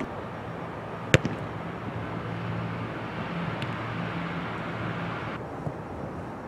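A single sharp smack about a second in, over a steady low engine hum that cuts off suddenly near the end.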